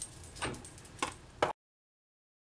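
Acrylic cutting plates knocked and slid into place on a Big Shot die-cutting machine: a few light clacks, then the sound cuts off abruptly to dead silence about a second and a half in.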